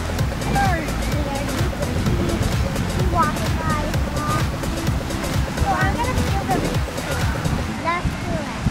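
Busy beach ambience: steady wind and surf rumble with distant voices of beachgoers and short high calls that glide up and down, every second or two, with music mixed in.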